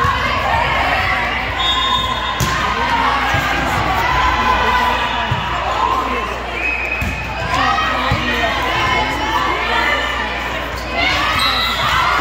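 Volleyball players and spectators shouting and cheering during play, with scattered thuds of the ball being hit, in a large gym hall.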